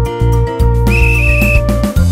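Bouncy backing music for a children's song with a steady bass beat, and a single high whistle blast, about half a second long, about a second in.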